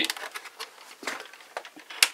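Faint scattered knocks and rustles of a large Cross RC HC6 model truck being handled and turned on a workbench.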